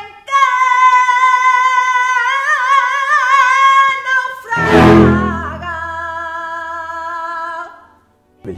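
A female flamenco singer holding long, wavering melismatic notes over a symphony orchestra. A louder, fuller orchestral swell comes about halfway through, and the last held note stops just before the end.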